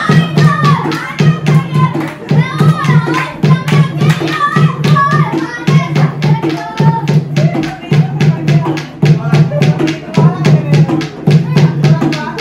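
Dholki (Punjabi barrel drum) played in a fast, steady beat while women and girls sing Punjabi gidha folk songs together, with hand clapping along to the beat.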